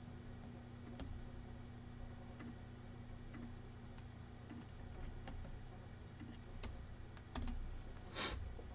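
Computer keyboard keys tapped now and then while code is typed, faint single clicks spaced irregularly, a few in quick succession near the end, over a faint steady low hum.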